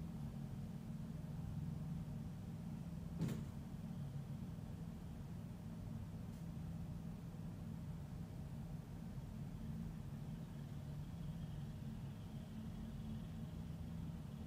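Steady low background hum, with one sharp click about three seconds in and a fainter one a few seconds later.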